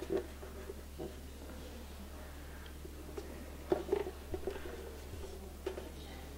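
Faint handling noise of a resonator guitar being held and moved: a few soft knocks and rubs, the clearest a short cluster about four seconds in, over a steady low hum.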